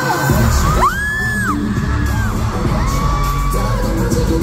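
Live K-pop performance over the arena speakers: a heavy bass beat comes in just after the start, and a male singer slides up into a high note held for about half a second, then holds a second long note near the end, with the crowd whooping.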